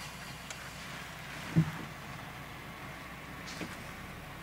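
Steady low hum of a car's engine idling, heard from inside the cabin, with one dull thump about a second and a half in.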